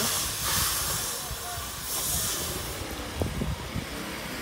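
Outdoor street background noise: a steady hiss over a low rumble, the hiss swelling for a second or so about half a second in.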